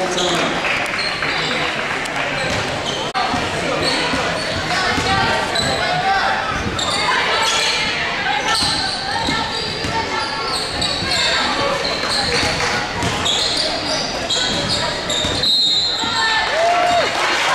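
Basketball game sounds in a gymnasium: many spectators' and players' voices calling and chattering at once, with a basketball bouncing on the hardwood court.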